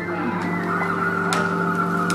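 Background music with long held notes, and a single sharp click of the air hockey puck being struck about halfway through.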